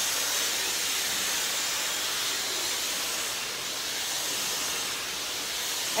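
Handheld hair dryer running steadily, a rushing-air hiss as long hair is blown dry, dipping a little in level midway.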